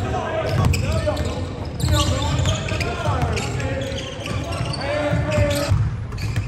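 A basketball dribbled repeatedly on a hardwood gym floor, under indistinct voices of players calling out.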